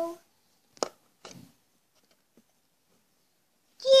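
Near silence, broken by a short sharp click about a second in and a softer, briefer sound just after it.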